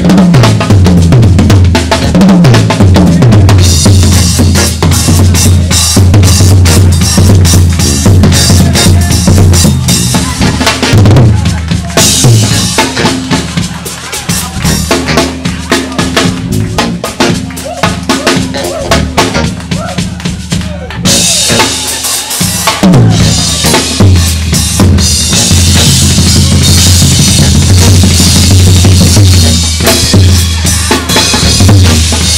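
Live drum solo on a full drum kit: bass drum, snare and rimshots in dense funk patterns with rolls. Midway the heavy low end drops back to lighter, cymbal-bright playing, then the full kit comes back in loud.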